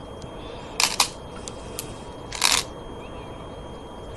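Go stones being placed on a demonstration board: two sharp clacks about a second and a half apart, with a few lighter ticks between them.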